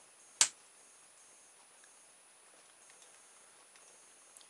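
A single sharp click about half a second in as the open-air reed switch, welded shut by its own sparking, is poked free with a finger; otherwise only quiet room tone.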